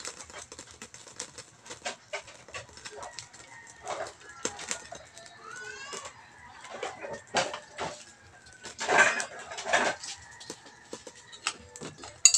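Birds calling, with louder calls about nine and ten seconds in, over scattered faint clicks and taps.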